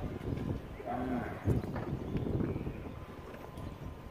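Quiet outdoor background with a low steady hum of traffic, a few short bits of faint voice and some light taps.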